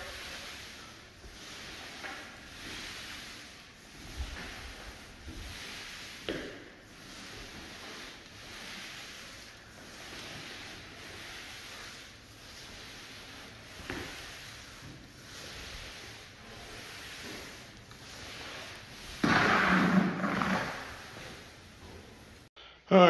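T-bar applicator pad swishing across a hardwood floor as it spreads a wet coat of water-based polyurethane, in soft repeated strokes roughly a second apart. A louder, fuller sound rises for about two seconds near the end.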